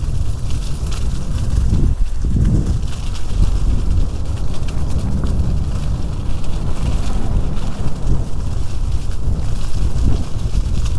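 Wind rushing over a helmet-mounted microphone and an electric scooter's tyres rumbling over a bumpy, leaf-covered dirt trail, with frequent small knocks and rattles from the ride.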